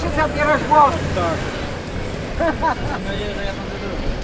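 Short snatches of people talking among a small crowd, over a steady low rumble.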